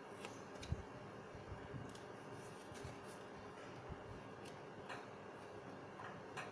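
Faint, irregular clicks and taps of a deck of tarot cards being handled and a card laid down on the table, with a soft thump just under a second in.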